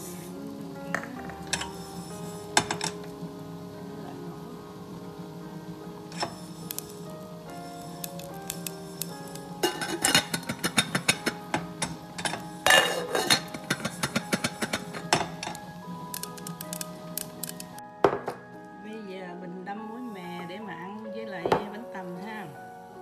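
Sesame seeds popping in a hot, lid-covered stainless steel pot as they toast, a dense run of sharp crackling pops through the middle of the stretch, then one louder knock shortly before the end. Background music plays throughout.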